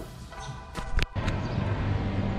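Background music fading out, ending in a click about a second in, followed by a steady low hum of outdoor background noise.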